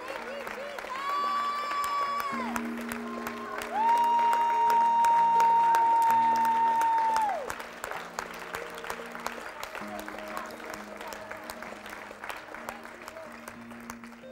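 Worshippers clapping over soft, sustained chords, while a high voice calls out in long held notes. The longest and loudest note lasts about four seconds and ends partway through. After it, only the clapping and chords go on, more quietly.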